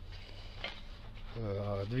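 A man speaking Russian, starting again about one and a half seconds in after a short pause, over a low steady hum.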